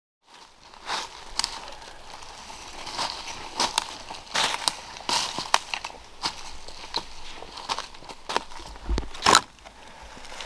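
Footsteps crunching through dry leaf litter and twigs on a forest floor at a walking pace, each step a short crackle, with the loudest crunch near the end.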